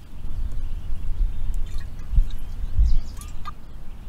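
Outdoor ambience: wind rumbling on the microphone in uneven gusts, strongest about two and three seconds in, with a few faint bird chirps above it.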